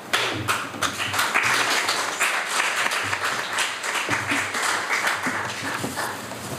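A congregation applauding: many hands clapping steadily, dying down a little near the end.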